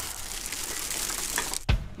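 Large plastic trash bag full of rubbish rustling and crinkling steadily as it is handled and moved, stopping abruptly near the end.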